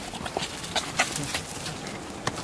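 Footsteps crunching quickly and unevenly over dry leaves and ground, as someone hurries along; the loudest step comes about a second in.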